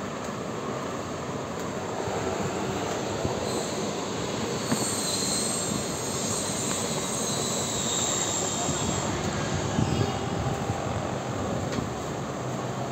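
Steady rushing background noise, with a few faint knocks.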